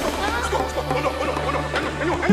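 Chickens clucking in a dense stream of short calls over a steady, low background music drone.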